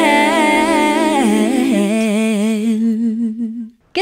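Intro jingle: a wordless sung melody with wide vibrato over a held low note, thinning out and dying away shortly before the end.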